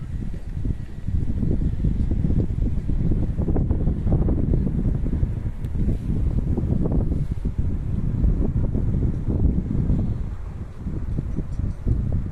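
Wind buffeting the microphone: a loud, gusty low rumble that swells and dips, easing briefly near the end.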